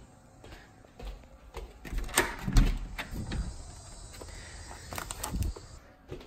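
Footsteps on a hardwood floor with scattered knocks and clicks of handling, the loudest a sharp click and thump a little over two seconds in.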